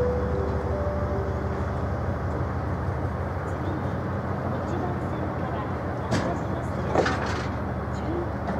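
Oil tank wagons of a freight train rolling past a station platform: a steady low rumble from the wheels and running gear, with a couple of sharp clacks from the wheels late on.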